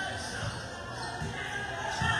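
Basketball bouncing as it is dribbled on a hard painted court, over a steady babble of spectators' voices.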